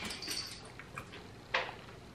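Faint chewing and small wet mouth clicks from a man eating hand-cooked crisps with his mouth closed, with one short louder sound about one and a half seconds in.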